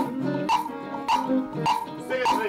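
Ensemble music in a steady groove: a sharp percussion hit lands on the beat about every 0.6 s, over held bass and mid-range notes.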